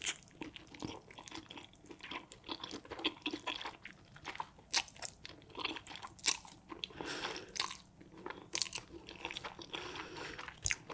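Close-miked eating sounds: crunching bites into a pan-fried wrap of spicy noodles and egg, with wet chewing and many sharp crackles. Noodles hanging from the wrap are slurped in during the second half.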